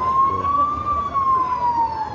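An emergency vehicle's siren wailing: one tone slowly rises to a peak just under a second in, then slowly falls.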